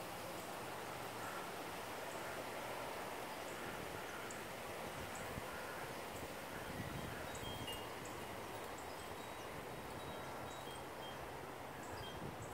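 Faint, scattered chiming tones over a steady hiss of breeze in leafy trees.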